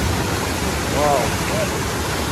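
Steady, loud rushing of a waterfall and river, with a person's voice calling out briefly about a second in.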